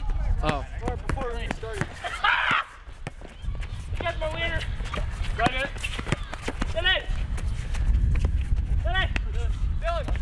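Basketball players' short wordless shouts and laughter, with a basketball dribbled on an asphalt court in scattered knocks. Wind rumbles on the microphone throughout.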